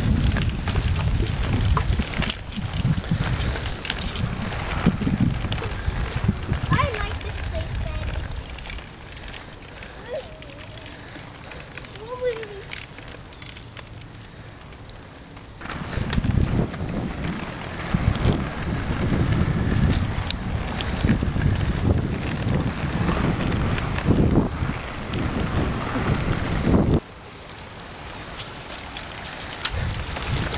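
Wind buffeting the microphone of a camera moving alongside children's small bicycles, a gusty low rumble with crackling tyre noise from the trail. It drops to a quieter hiss for several seconds in the middle and again near the end.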